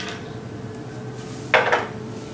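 A short metallic clink and rattle about one and a half seconds in, as a small metal tool or bicycle part knocks against metal.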